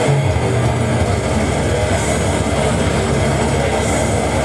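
Live slam death metal played loud: heavily distorted electric guitar in a dense wall of band sound, with a low held note at the start that shifts to a new riff about a second in.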